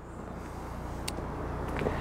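Steady low hum with outdoor background noise, slowly growing louder, and a single faint click about a second in.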